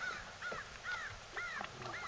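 A bird calling in a quick series of about five short, arched calls, roughly two a second.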